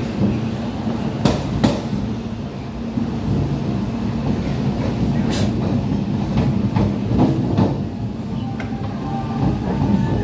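Steady low rumble of a moving passenger train heard from inside the carriage, with occasional sharp clacks of the wheels over rail joints.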